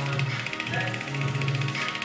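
Electric facial cleansing brush running against the skin: a fast, even mechanical ticking buzz, with quiet background music underneath.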